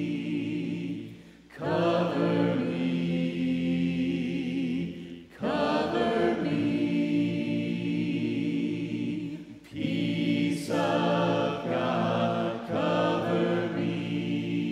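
Church congregation singing a hymn a cappella, many voices together without instruments, in held phrases a few seconds long with short breaks for breath between them.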